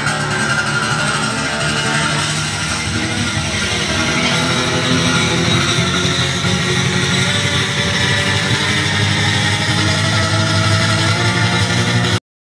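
Amplified acoustic guitar strummed hard and fast, making a dense, noisy wash of sound with no clear chords.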